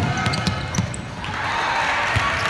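Basketball thumping on a hardwood gym floor during play, with short high sneaker squeaks. About a second and a half in, crowd noise in the gym rises.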